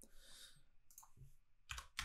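Faint computer keyboard typing: a few soft key clicks against near silence.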